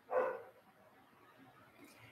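A dog giving a single short bark about a quarter of a second long, just after the start.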